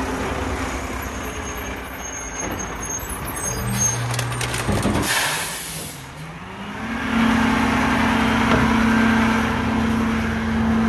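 Garbage truck running close by: a sharp air-brake hiss about five seconds in, then the engine note climbs and holds at a higher, steady pitch, louder than before.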